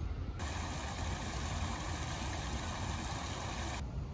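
Steady outdoor background noise: a low rumble with an even hiss over it that starts about half a second in and cuts off abruptly just before the end.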